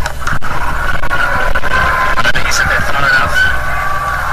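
Stadium crowd cheering loudly and steadily as a ball is struck high towards the boundary, with whistling and shrill calls above the roar.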